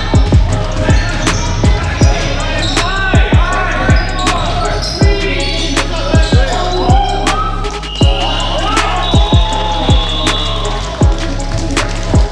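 A basketball bouncing again and again on a gym floor, one sharp thump every half second or so, with squeaks in between.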